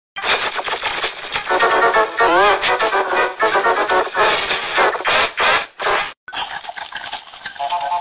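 A cartoon voice clip played through heavy distortion effects: a warbling, pitch-bent voice buried in harsh noise. It cuts out about six seconds in, and a cleaner, narrower-sounding rendering of the clip starts straight after.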